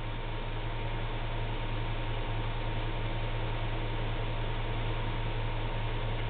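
Steady hiss with a low electrical hum and no distinct events.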